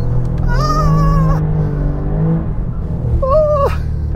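Alfa Romeo Giulia Quadrifoglio's twin-turbo V6 heard from inside the cabin, running under load with its drone rising in pitch about a second in. A high-pitched squeal cuts across it from about half a second to a second and a half in, with a shorter one near the end.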